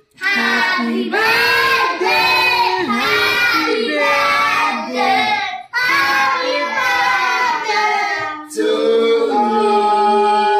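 A group of children singing together without instruments, loud and high-pitched, with a short break a little past halfway.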